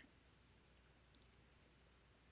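Near silence: faint room tone, with two brief faint clicks a little over a second in.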